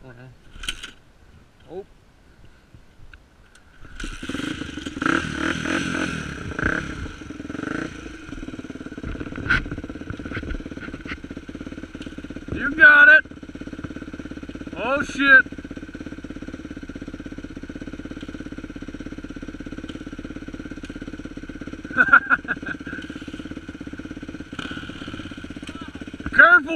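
A four-stroke 250F dirt bike is kick-started. A few light knocks come before the engine catches about four seconds in. It revs up and down a few times, then settles into a steady idle.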